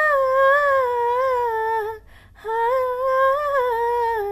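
A woman singing solo and unaccompanied in long, wordless held notes. There are two phrases, each wavering and sliding down at its end, with a short breath break about two seconds in.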